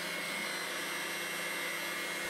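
Russell Hobbs 24680-56 stand mixer running steadily at its lowest speed with a faint constant whine, its beaters whipping meringue in a stainless steel bowl.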